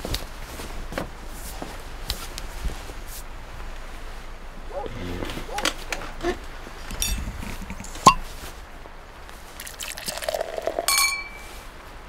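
A sparkling-wine bottle opened by hand: small handling clicks, then the cork pops once, loud and sharp, about eight seconds in. Wine is then poured into a glass, ending in a brief glass ring near the end.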